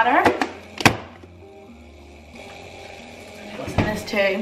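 A sharp knock of kitchen handling just under a second in, the loudest sound, then a quiet stretch of low room tone and a second knock near the end.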